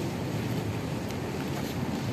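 Steady low rumble of wind on the microphone, with a few faint clicks in the middle.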